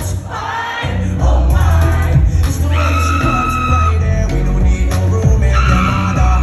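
Live concert music through a venue PA: a heavy bass beat with singing over it. The bass cuts out briefly just under a second in.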